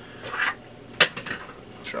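A scoop of pre-workout powder is tipped into a cup: a brief rustle, then one sharp knock of the scoop against the container about a second in, and a lighter click near the end.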